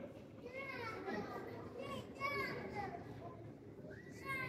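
Passers-by talking on a pedestrian street, among them a child's high-pitched voice chattering.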